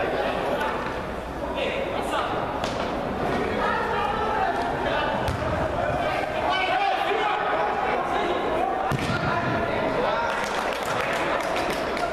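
Indistinct shouts and chatter of players and onlookers echoing in a large indoor hall, with a few sharp thuds of a football being kicked.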